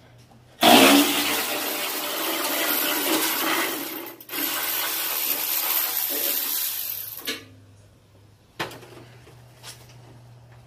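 Power ratchet running in two long bursts, spinning out a front-fender bolt, with a brief pause between them; afterwards a couple of faint clicks.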